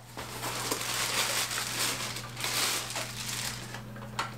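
Continuous rustling and crinkling of packaging and a padded fabric case being handled as an accessory is pulled out of it.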